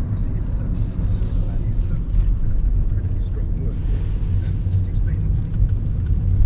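Steady low engine and tyre rumble inside a moving car's cabin, with talk radio playing underneath it.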